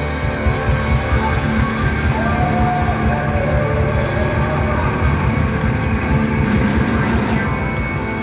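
Live rock band playing loudly: electric guitar over drums and bass, with a short held sung note about two and a half seconds in.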